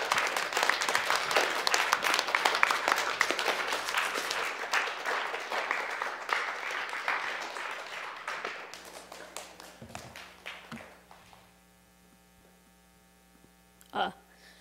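Small audience applauding, the clapping thinning out and dying away over about ten seconds. A low steady hum is left in the quiet room afterwards.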